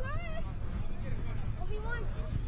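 Open-air field ambience: distant voices calling out, one near the start and another near the end, over a steady low rumble.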